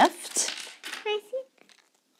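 Tissue paper rustling as a wrapped ornament is unfolded, then a short high-pitched voice sound about a second in; the sound drops to near silence near the end.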